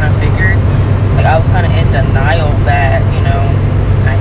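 A woman talking in a car's cabin, over a steady low rumble.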